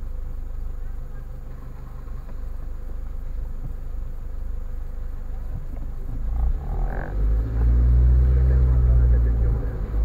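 Car engine idling, a steady low hum heard from inside the cabin; about six and a half seconds in the engine note rises and grows louder for a few seconds as the car pulls away.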